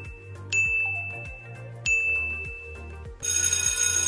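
Quiz countdown timer: a high electronic beep with a sharp start about every second and a third, three in all, over background music with a steady beat. A little past three seconds a loud electronic ringing like a telephone bell or alarm begins, the signal that time is up.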